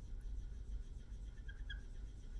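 Dry-erase marker drawing on a whiteboard, giving two faint short squeaks near the end over a steady low room hum.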